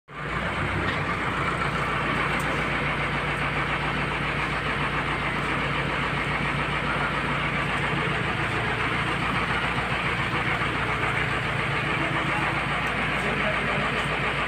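A crane's engine running steadily at constant speed with a low hum, lifting a heavy load on slings.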